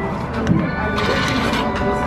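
Arcade din: electronic music and tones from the game machines playing steadily, with a short rising-and-falling voice-like glide about half a second in.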